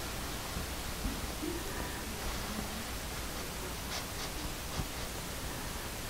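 Gentle, steady breath blown onto wet acrylic pour paint to feather its edges: a soft, even hiss with a few faint ticks.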